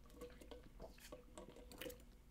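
Faint gulps and swallows of a man drinking from a bottle, a few soft clicks over a faint steady hum.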